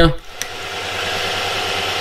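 Milling machine spindle spinning up and running a small mounted grinding stone, on a rig that trims Mazda 13B rotor side seals to length; a steady whirr that builds over about the first second.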